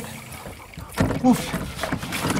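A man's short voiced exclamation, "vaf", about a second in, after a quieter moment.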